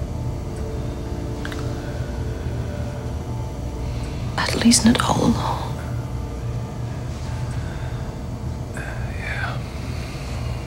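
A steady low hum, with a short burst of breathy whispering about halfway through and a fainter breathy vocal sound near the end.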